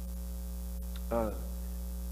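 Steady low electrical mains hum, with a man's single brief "uh" about a second in.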